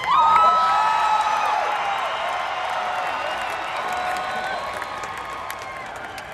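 Large concert crowd cheering and whooping, with long held shouts over a wash of applause. It is loudest at the start and slowly dies down over a few seconds.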